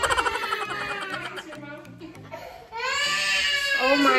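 A small child crying, with one long, high wail that falls in pitch near the end, over background music.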